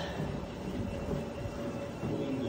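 Treadmill in use: a steady running rumble with a faint, even motor hum.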